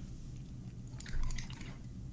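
Quiet room tone with a steady low hum, and a brief run of faint soft clicks about a second in.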